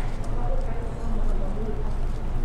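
Restaurant background: a steady low hum under distant, indistinct voices, with a few light clicks of a metal fork against a plastic food tray.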